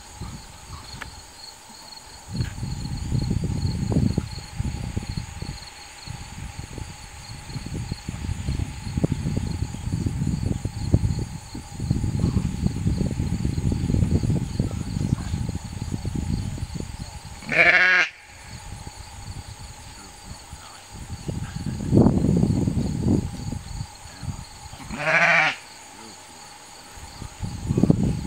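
Ewe in labour bleating loudly twice, once about two-thirds of the way through and again near the end. An irregular low rumble comes and goes under it, with a steady high insect drone throughout.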